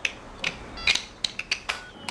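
Mobile phones and pagers being switched off: a quick series of sharp plastic clicks from their buttons and cases, about six in two seconds, some with a short electronic beep.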